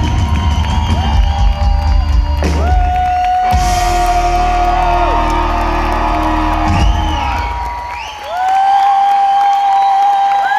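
Loud live band music with heavy bass, heard from within the audience, fading out about seven to eight seconds in, while the crowd cheers and whoops throughout.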